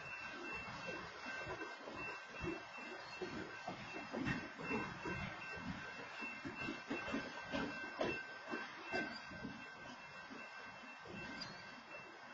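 Freight cars of a slow BNSF train rolling past, the wheels rumbling with irregular clanks and rattles on the rails, heard through a security camera's microphone.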